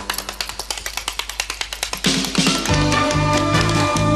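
Tap dancing: a fast, even run of tap-shoe clicks, about eight a second, over thin musical accompaniment. A bit past halfway the full band comes back in with bass and drums.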